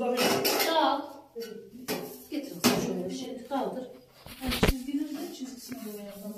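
Sheet-metal stovepipe sections clanking and knocking as they are handled and fitted together, with a louder knock about four and a half seconds in.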